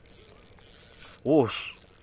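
Spinning reel being cranked to reel in a hooked fish, with the rod bent under load; a light, even mechanical noise. A man's short exclamation, 'oh', cuts in about a second in and is the loudest sound.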